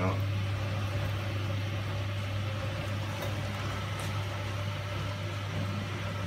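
Miele G 560 dishwasher's wash pump running with a steady low hum while water comes in for the pre-wash.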